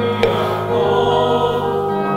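Choir singing a slow sacred hymn in long, held chords as communion music. A brief click sounds about a quarter of a second in.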